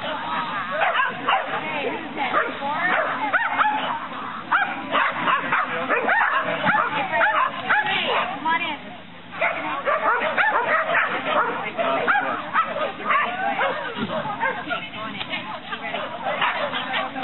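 Dogs barking and yipping almost without pause, mixed with people's voices. There is a short lull about nine seconds in.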